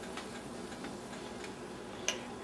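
Faint sizzling and crackling of mushroom duxelles cooking in a pan as a thin stream of cream is poured in, with a few soft ticks.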